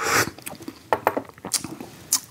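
A sharp breath out, then a few small wet clicks of the tongue and lips as a bitter green tea is tasted.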